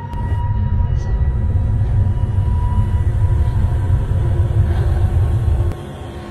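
Horror-film soundtrack: a loud, low rumbling drone with faint held tones above it, which cuts off suddenly near the end.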